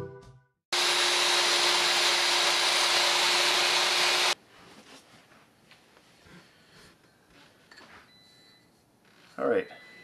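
Electric miter saw running and cutting through a wooden handle blank, loud and steady for about three and a half seconds, starting about a second in and stopping abruptly.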